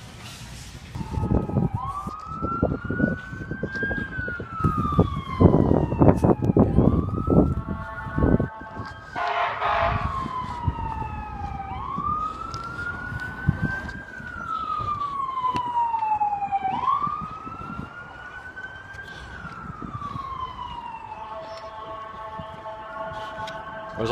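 Emergency vehicle siren wailing, its pitch rising and falling slowly about every four seconds, then changing to steady tones near the end. Wind or handling rumble on the microphone is heard during the first several seconds.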